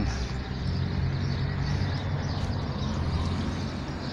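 Street traffic: a motor vehicle's engine running steadily, heard as a low hum over road noise.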